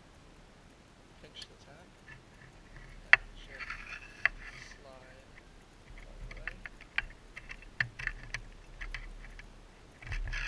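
Scattered sharp clicks and short scraping rasps of a braided steel cable being worked through the body of a Textape cable seal to bypass it. The loudest click comes about three seconds in, with a cluster of clicks later on.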